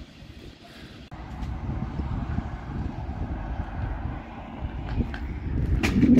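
Low, uneven rumble of an airport bus at the stop, with wind on the microphone, swelling about a second in. A brief sharp sound comes near the end.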